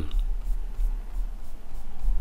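A low rumble with faint scratchy rubbing, the sound of a computer mouse sliding on the desk as the chart is dragged.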